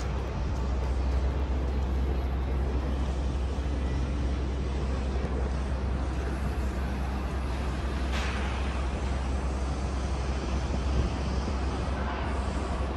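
Steady low rumble of city traffic, with a brief hiss about eight seconds in.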